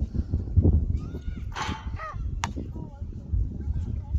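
Wind rumbling on the microphone on an open court, with a few short high calls that rise and fall in the middle and a single sharp knock about two and a half seconds in.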